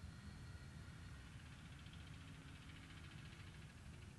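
Near silence: faint outdoor ambience with a low, steady rumble.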